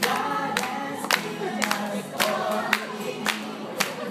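A group of young children singing together over music with a steady sharp beat, a little under two beats a second.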